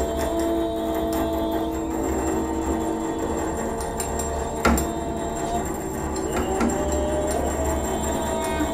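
Slow, sustained live ensemble music: a clarinet holds a long note with small bends in pitch over lower held tones and a deep steady drone. There is one sharp knock a little past halfway.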